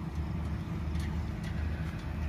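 Canopied diesel generator set running with a steady low hum.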